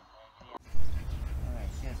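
Outdoor background noise: a steady low rumble with faint voices in it. It starts abruptly about half a second in, after a brief quiet gap.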